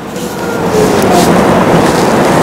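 A loud, even rushing noise with no clear pitch that grows steadily louder over the two seconds.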